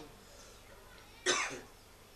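A single short cough about a second and a quarter in.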